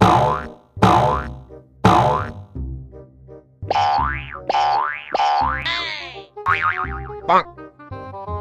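Cartoon boing sound effects: three springy boings about a second apart, then a run of quick rising-and-falling boings and short falling chirps.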